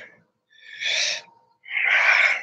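A man breathing heavily close to the microphone: two breathy, unvoiced breaths of about a second each.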